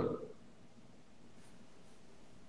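The last syllable of a man's speech fades out, followed by a pause with only faint room hiss.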